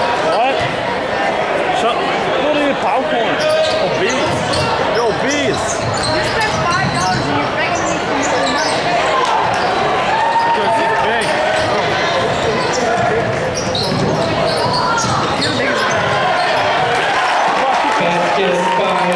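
Basketball game in a gymnasium: the ball bouncing on the hardwood court over steady crowd chatter, echoing in the large hall.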